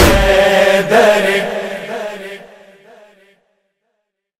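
Devotional chanting of a song in praise of Imam Ali, voices holding a long final phrase over the music. A drum beat sounds at the start and another about a second in, and the whole fades out over the next two seconds.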